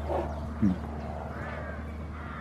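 A goat gives one short, low grunt-like call that falls in pitch, a little over half a second in, while its hoof is held for trimming.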